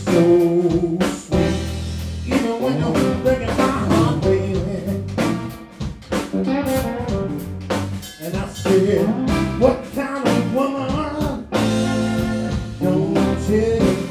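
Live blues trio playing: a Telecaster-style electric guitar plays lines with bent, gliding notes over electric bass and a drum kit.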